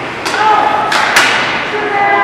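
Ice hockey play along the boards: three sharp knocks of puck and sticks striking the boards and ice, the loudest a little past a second in, with a voice calling out over them.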